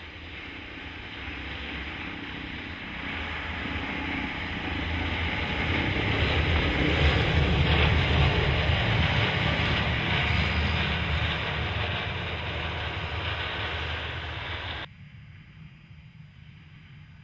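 Tracked snow carrier driving past through snow. The engine and the churning of its tracks grow steadily louder to a peak about halfway through, then ease off. Near the end the sound drops suddenly to a much quieter low hum.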